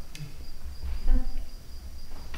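Crickets chirping in a steady, high, finely pulsed trill, over a low rumble of room noise.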